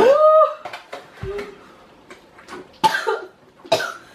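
A person cries out with a short rising wail, then coughs several times in pain, the mouth burning from an extremely hot chili-pepper chip.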